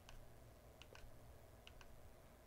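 iPhone 15 Pro side power button pressed through the Spigen Ultra Hybrid case's raised clear button cover, giving faint, crisp clicks: one at the start, then two quick pairs about a second apart.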